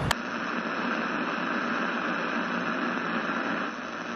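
Steady hiss of television static, like an untuned TV set, cutting in sharply with a click just after the start.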